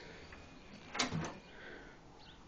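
A door latch or handle clicking once, about a second in; otherwise quiet.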